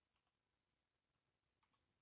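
Near silence, with a few very faint clicks of computer keyboard typing, a pair of them near the end.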